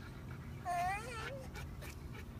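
Baby girl giving a single short whiny fuss, high-pitched and rising then falling, about two-thirds of a second in. She is protesting at having her bare feet put on the grass.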